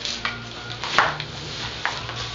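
Nylon gear-bag side pocket being pulled open and a paintball pod pack being rummaged out of it: irregular rustling and scraping of fabric and plastic, with a sharper clack about a second in and another shortly before the end.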